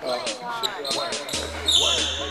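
Basketball dribbled on a hardwood gym floor, bouncing about every half second, with voices in the background. A deep bass layer of music comes in past halfway.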